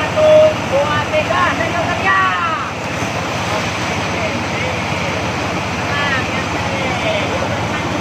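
Whitewater of a river rapid rushing steadily. Over it, people shout and call out from about half a second to three seconds in, and again briefly near six and seven seconds.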